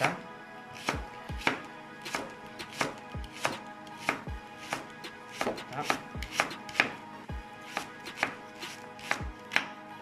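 Chef's knife slicing a leek into thin rounds on a wooden cutting board: a sharp knock of the blade on the board about twice a second, slightly uneven.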